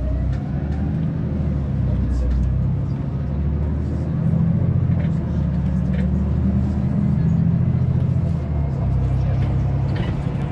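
Bus interior while riding: the engine and drivetrain run with a steady low rumble under road noise. Right at the start a whine rises in pitch as the bus pulls away.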